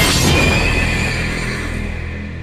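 A horse whinnying in a film trailer's soundtrack. It breaks in suddenly, with a high call that falls slightly over about a second and then fades, over a low, steady music drone.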